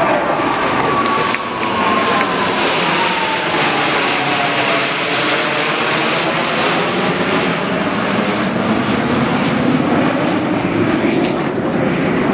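A formation of six Blue Angels F/A-18 Hornet jets flying past, their jet engines roaring loudly and steadily. A whine in the roar falls in pitch over the first few seconds as the jets go by.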